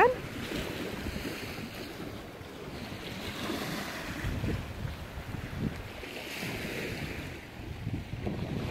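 Small waves washing on the bay shore, with gusty wind rumbling on the microphone.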